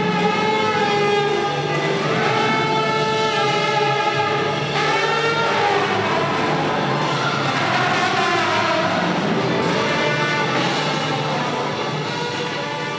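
Klezmer orchestra playing, with trombone, accordion and tuba: long held notes and sliding pitches, growing quieter near the end.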